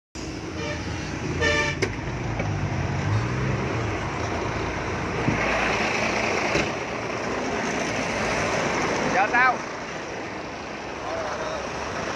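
Road traffic noise with a vehicle engine running and a short horn toot about a second and a half in. A brief voice cuts in around nine seconds in.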